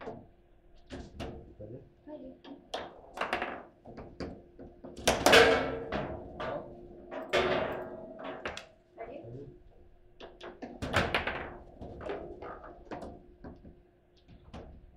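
Table football (foosball) in play: a rapid run of sharp knocks and clicks as the ball is struck by the plastic figures and rods, with a few louder hits about five and eleven seconds in.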